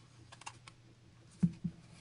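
Light clicks and handling taps of a CD being pressed and pried off the soft rubbery centre hub of its album case. A sharper tap comes about a second and a half in.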